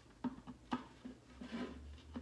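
A few light clicks and taps as large Christmas bulb ornaments are handled and fitted one on top of the other.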